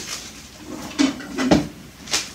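Knocks of a kitchen cupboard being shut: a light knock about a second in, then a heavier thump half a second later.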